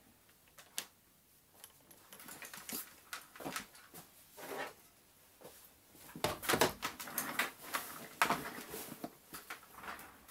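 Tool kit being handled and rummaged through: irregular small clicks, taps and rattles, sparse at first and busier and louder from about six seconds in.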